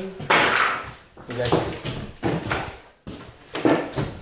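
Excited voices and unclear exclamations, with a loud noisy burst about a third of a second in and scattered knocks and scuffs from people moving over a debris-strewn floor.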